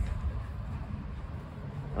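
Low, uneven outdoor background rumble.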